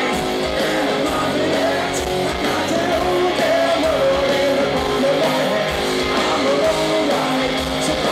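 Live rock band playing through a concert PA, heard from the audience: electric guitars with a sung lead vocal over the full band.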